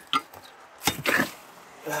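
Rustling and a short metal clatter as a steel jack handle is pulled out of a car's trunk-side jack compartment packed with shredded mouse-nest debris. There is a small click just after the start, then a louder burst of clatter about a second in.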